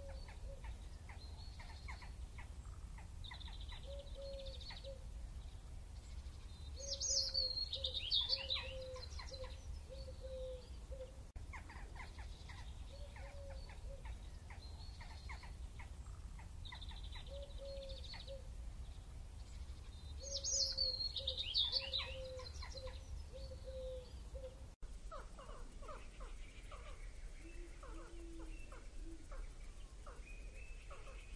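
Outdoor ambience of birds chirping and calling over a steady low rumble, with a louder flurry of chirps about seven seconds in and again about twenty seconds in. Near the end the sound changes to a different set of thinner, duller calls.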